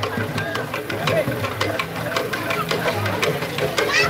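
Voices talking over background music with a quick, clicking percussive beat.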